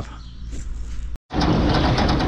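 From about a second in, the roller chain drive of a potato harvester running with dense, continuous clattering. The clatter comes from the chain tensioner knocking against its tensioning bolt: the bolt is bent and cannot take up the tensioner's play.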